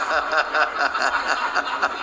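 Laughter: a run of short, rhythmic chuckles.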